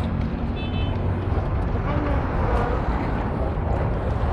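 Busy outdoor market ambience: a steady low rumble under faint background voices, with a brief high beep about half a second in.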